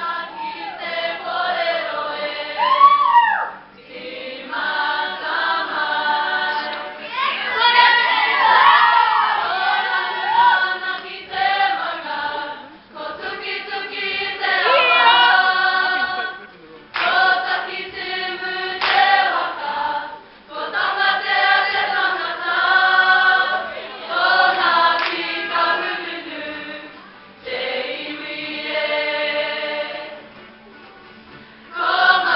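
Kapa haka group of mostly young women singing a waiata together in unison, in phrases broken by short pauses every few seconds.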